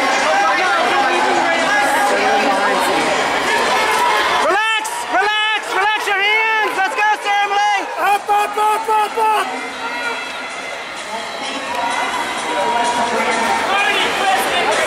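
Spectator crowd at an indoor track meet: a steady murmur of chatter, with a nearby high-pitched voice yelling short repeated shouts of encouragement for about five seconds, starting a few seconds in.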